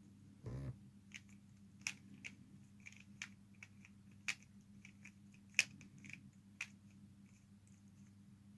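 Plastic pyraminx puzzle being turned by hand: a dozen or so faint, irregular clicks as its faces are twisted, with a dull bump about half a second in.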